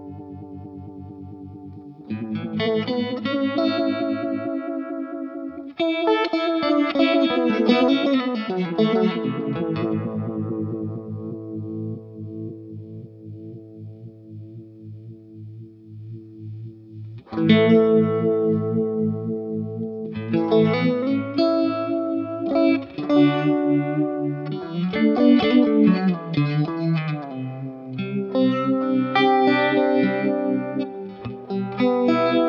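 Electric guitar chords played through a Black Cat Vibe, an all-analog Uni-Vibe recreation, with the effect engaged. Two strummed chords ring out and fade over several seconds, then busier chord playing picks up from about the middle on.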